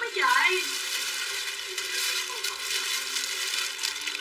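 Clothing and plastic packaging being handled and rustled: a steady crackling rustle, after a single spoken word at the very start.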